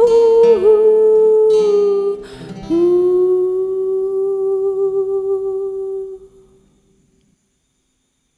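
The final bars of an acoustic song: a long, wavering held vocal note over acoustic guitar strums. The strums stop about two seconds in, a last held note begins just under three seconds in, and it fades to silence by about seven seconds.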